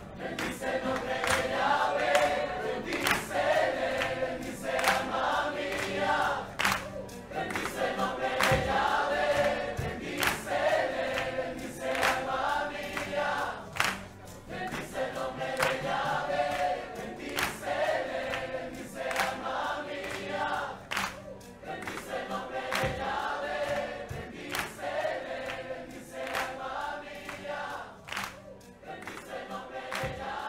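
Live Christian worship music: a choir of voices singing a short refrain over and over, with the band keeping a steady beat.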